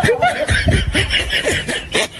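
People laughing, a run of short chuckles and snickers.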